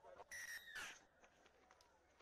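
Referee's whistle blown in two short blasts close together, the second falling away in pitch.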